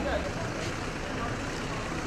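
A vehicle engine running with a steady low rumble under an even noise haze, as a vehicle is waved forward.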